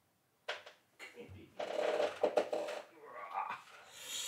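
A man's low, indistinct voice coaxing a cat, with a short sharp handling sound early on and a rustle of cloth and fur near the end as the cat is lifted.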